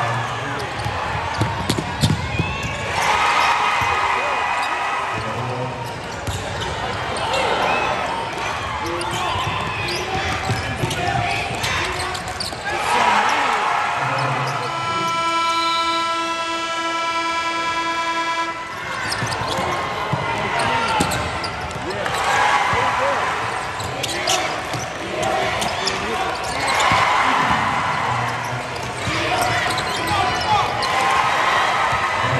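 Basketball game in an arena: a ball bouncing on the court amid crowd voices that swell up several times. Near the middle a horn sounds steadily for about four seconds.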